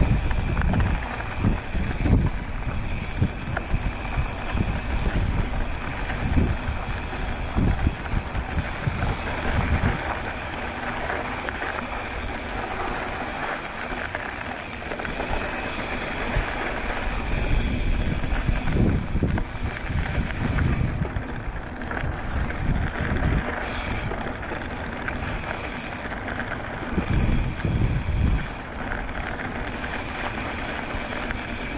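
Hardtail mountain bike rolling along a dry dirt singletrack: a steady rush of tyre and wind noise on the handlebar camera, with irregular low thumps from the bumpy trail.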